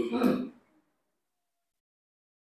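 A man clearing his throat once, a short rasping burst of about half a second at the start, after which the sound cuts to dead silence.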